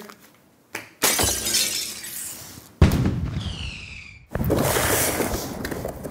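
Glass shattering and crashing in three loud bursts, about one, three and four and a half seconds in, each trailing off. A falling ringing tone sounds between the second and third crash. It is a crash effect standing in for the tossed-away booklet smashing something.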